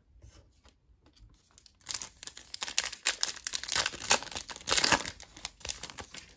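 Foil wrapper of a 2021 Panini Chronicles football card pack being torn open and crinkled, starting about two seconds in.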